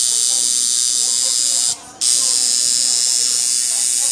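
Tattoo machine buzzing steadily as its needle works into the skin. It cuts out briefly just under two seconds in, then starts up again.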